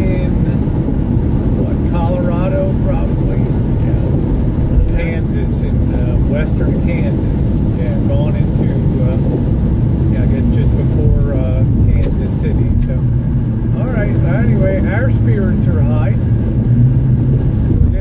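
Steady road and engine noise of a car cruising at highway speed, heard from inside the cabin.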